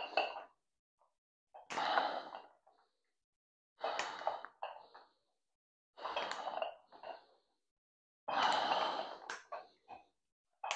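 A man's breath pushed out hard with each dumbbell curl: four exhalations about two seconds apart, each lasting about a second. The last one, near the end, is the longest and loudest.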